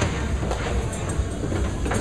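Candlepin bowling alley din: balls rolling down the wooden lanes with a steady low rumble, and a few short clatters of pins and balls.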